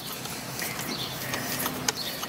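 Thread tap in a T-handle tap wrench being turned back and forth to re-cut threads in solid carbon fibre: faint scattered clicks and scraping, with one sharper click near the end.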